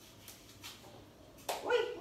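Faint clicks of a knife cutting an apple, then about one and a half seconds in a high-pitched voice starts suddenly and runs on with a rising and falling pitch.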